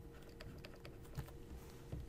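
A stylus tapping and scraping on a tablet screen while a word is handwritten, a quick irregular run of faint clicks over a low steady hum.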